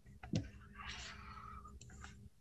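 A few faint clicks, a couple near the start and two more near the end, with a soft breathy noise in between.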